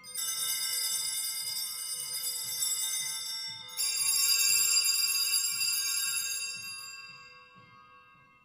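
Altar bells rung at the elevation of the host during the consecration of the Mass: a bright ringing of several bells that starts suddenly, is struck up again just under four seconds in, and then dies away.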